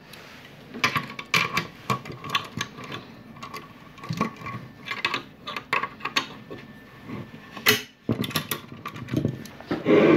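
Metal hand tools clicking and clinking on the propeller hub's screws and nuts as a torque wrench and flat wrench tighten them to 11 N·m, with irregular small clicks and one sharper click about three-quarters of the way through.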